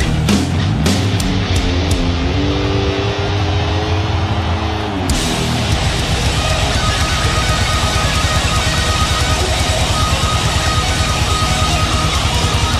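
Heavy metal band playing, with distorted electric guitars, bass and drums. A held, slightly sagging chord rings under cymbal hits, then about five seconds in the full band comes in with a fast, driving riff.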